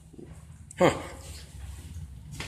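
A single short "huh" from a person, falling sharply in pitch, about a second in, over a low steady hum.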